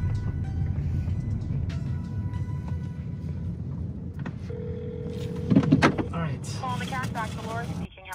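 Low rumble inside a car cabin as it pulls up and stops. Then a phone call goes through: a single steady ring tone lasting about a second and a half, a couple of knocks, and a voice answering on the phone near the end.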